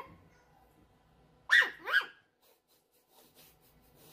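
A small white puppy gives two short, high-pitched yips about half a second apart, about a second and a half in. Each yip rises and then falls in pitch.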